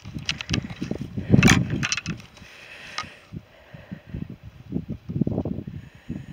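Walking footsteps and hand-held camera handling noise: irregular soft thumps and rustles, a louder knock about a second and a half in, then a quieter stretch before more thumps near the end.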